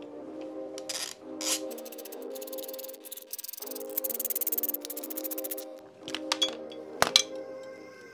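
Background music over a hand ratchet clicking in two quick runs, about two and four seconds in, as the screws of a motorcycle's primary derby cover are backed out. A sharp metallic clink comes about seven seconds in.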